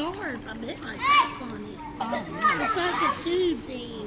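Indistinct children's voices calling and shouting around a swimming pool, with a loud high-pitched shout about a second in, over a steady low hum.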